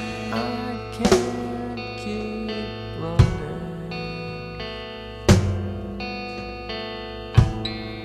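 Instrumental passage of a 1990s indie rock song: sustained guitar notes ringing out, punctuated by a single drum hit about every two seconds.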